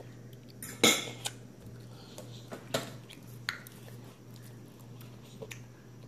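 Cutlery knocking against ceramic dishes at a dinner table: a few separate clinks, the loudest about a second in, over a faint steady low hum.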